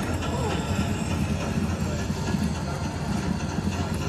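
Continuous low, rattling rumble like a moving ride or train, from the subwoofers and tactile seat thumper playing a VR roller-coaster's soundtrack, under the chatter of a trade-show crowd.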